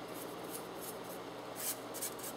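Faint steady hiss of room tone. About three-quarters of the way through there is a brief soft scratch, a paintbrush's bristles brushing through powdered pastel in a metal pan.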